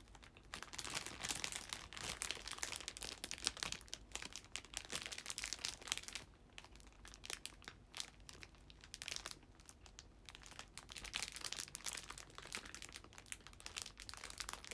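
Crinkly plastic wrapper of a melon pan crackling as it is handled close to the microphone. The crackling comes in two spells, with a quieter pause of about two seconds in the middle.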